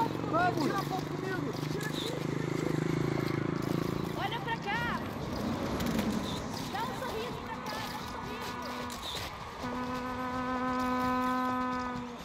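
Produced street ambience: scattered voices and a low rumble during the first few seconds. In the last few seconds a steady pitched tone with overtones fades in and is held.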